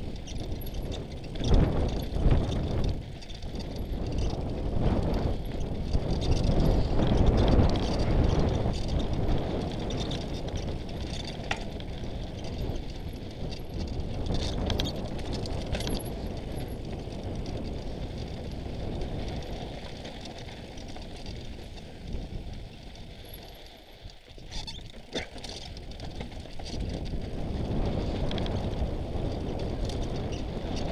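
Mountain bike riding down a loose, rocky trail: tyres rolling and crunching over gravel and stones, with frequent knocks and rattles over the bumps, loudest for a few seconds near the start and again around the middle of the first third.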